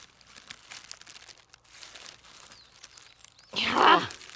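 Plastic-covered hand digging in soil and dry pine needles around a dandelion root: soft, irregular crackling and rustling, with a louder burst near the end.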